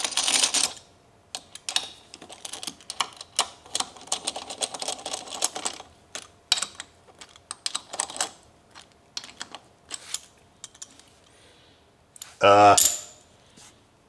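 Socket wrench ratcheting on the lug nuts of a power wheelchair's drive wheel: runs of quick metallic clicks with a few sharper knocks of metal on metal. The clicking stops before the end.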